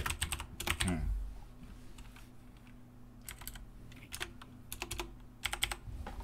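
Computer keyboard typing: a quick run of keystrokes in the first second, then scattered single and paired key clicks through the rest.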